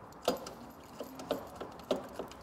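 Light metallic clicks and clinks, about four spread across two seconds, as a steel scooter side stand with its return spring and mounting screws is held against the frame and the screws are turned in by hand.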